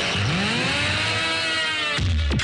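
Film-song soundtrack: one synthesized tone sweeps sharply up in pitch a moment in, then levels off and slowly falls back, over the song's backing.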